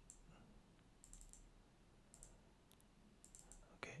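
Faint computer mouse clicks over near silence: a few scattered single clicks and quick double-clicks, in small groups about a second apart.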